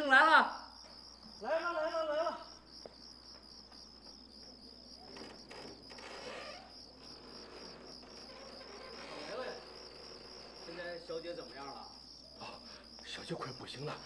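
Crickets chirping steadily in a fast, even pulsing trill, the night ambience under the scene, with a man's voice briefly in the first two seconds.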